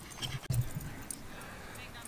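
A dog galloping on grass close by: a quick run of soft paw thuds in the first second, then quiet outdoor background.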